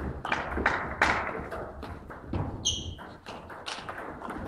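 Table tennis rally: the ball clicking off bats and table in quick, irregular succession, echoing in a sports hall, with low thuds of footwork. A brief high squeak comes about two-thirds of the way through.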